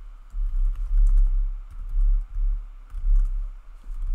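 Typing on a computer keyboard: a quick run of key clicks, with a louder low thudding underneath that swells and fades several times.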